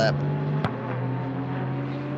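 GT3 race car engines running on the circuit, heard through the trackside broadcast feed as a steady drone whose pitch climbs slowly as a car accelerates. There is a single sharp click about two thirds of a second in.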